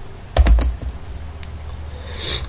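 Keys being typed on a computer keyboard for a short command: a quick cluster of clicks about half a second in, then a few lighter clicks.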